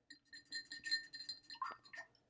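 A paintbrush clinking against a glass water jar: a quick run of about ten small, faint taps with a light glassy ring under them.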